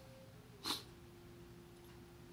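A man's short breath noise, a brief hiss about two-thirds of a second in, followed by a faint steady tone.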